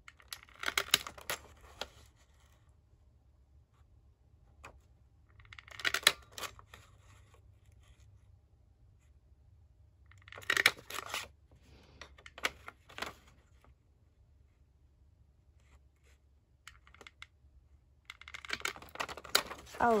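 Handheld paper border punch pressed through the edge of a sheet of paper: four short bursts of clicks and crunches a few seconds apart, each a press of the punch.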